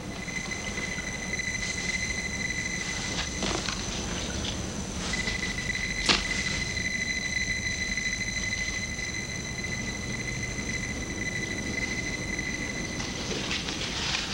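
A steady high-pitched electronic tone with fainter higher overtones, from a prototype electronic device being tested. It drops out briefly about four seconds in, then resumes, and a single sharp click sounds about six seconds in.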